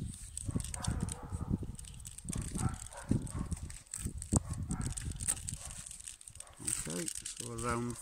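Dry birch bark strips crackling and rustling as they are handled and threaded through the woven loops of a bark sheath, in many small irregular clicks. Near the end a drawn-out voiced 'uh' is heard.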